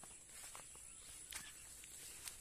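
Faint footsteps on a grassy earthen bank: a few soft scuffs and clicks over a quiet outdoor background with a faint, steady high hiss.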